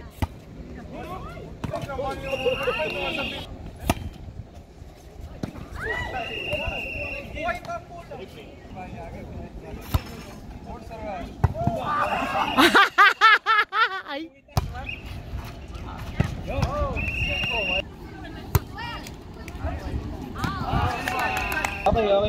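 A volleyball struck by hand several times during a rally, each hit a sharp slap a few seconds apart, with players shouting and calling to each other. A loud burst of shouting comes just past the middle.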